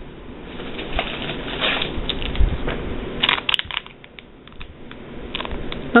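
Clear cellophane bags of wax tarts crinkling and rustling as they are rummaged through and picked up, with scattered light clicks and taps of packaging.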